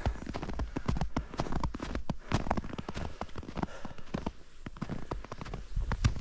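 Footsteps crunching through fresh powder snow, a quick irregular run of crisp crunches and clicks, with a low rumble on the microphone underneath.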